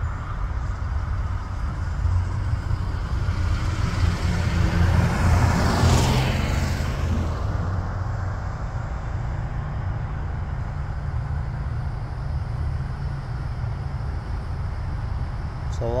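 Roadside traffic noise with a steady low rumble, and one vehicle passing that swells about four seconds in and fades away a few seconds later.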